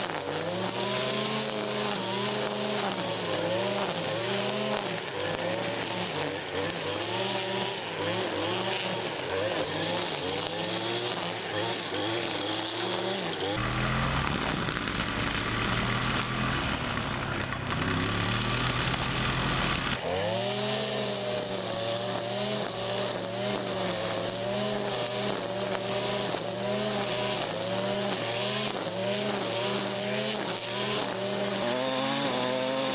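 STIHL brushcutter's petrol engine running at high revs, its pitch rising and falling as the trimmer line cuts into grass. From about 14 to 20 s the sound turns duller and noisier, with the whir of the line head through grass, before the revving engine returns.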